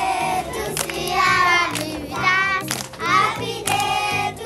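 A group of children singing together in phrases about a second long, with hand claps on the beat and low bass notes underneath.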